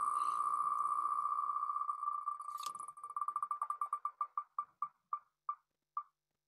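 Tick sound of the wheelofnames.com spinner as its name wheel spins down: ticks so quick at first that they blur into one steady tone, then separating and slowing to a few a second near the end as the wheel comes to rest.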